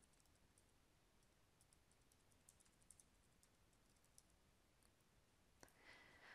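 Near silence, with faint, scattered computer keyboard key clicks as text is typed, and a slightly louder click near the end.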